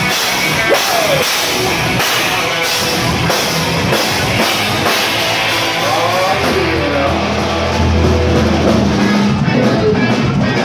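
A rock band playing live on a drum kit, electric guitars and bass, loud and dense. A heavy low bass note swells in from about seven seconds in.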